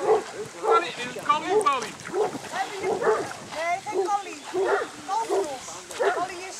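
A dog yelping and whining excitedly in short, repeated calls, about once or twice a second.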